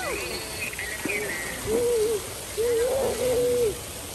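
Wordless vocal sounds from a person: three drawn-out calls, each rising and then falling in pitch, the last about a second long.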